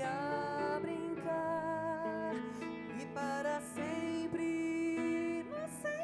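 Slow, gentle music: a nylon-string classical guitar plucking an accompaniment under a held melody line with a wavering vibrato.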